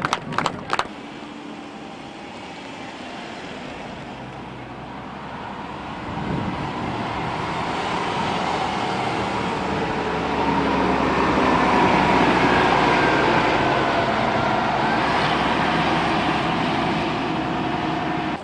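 A charter coach bus's engine pulling away and passing close by, growing louder from about six seconds in and loudest about twelve seconds in.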